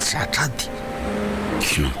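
Voices speaking in a Malagasy radio play, with a brief pause in the middle, over a steady low hum.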